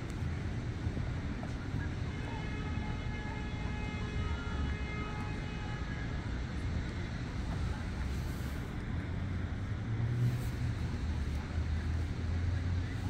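Steady low outdoor rumble of wind on the microphone and distant traffic. A faint, steady, multi-toned hum starts about two seconds in and stops about four seconds later.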